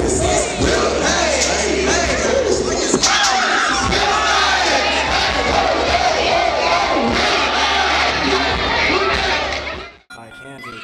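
A packed crowd of young people shouting and cheering, many voices at once, cheering on a dancer in a dance circle, over a low steady hum. It cuts off suddenly near the end.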